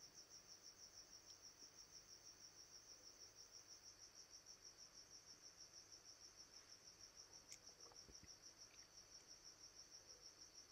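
Near silence with a faint cricket chirping steadily in the background, a high-pitched pulse repeating about five to six times a second.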